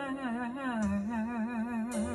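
A woman's singing voice holding one long note with a wide, even vibrato, stepping down in pitch a little under a second in.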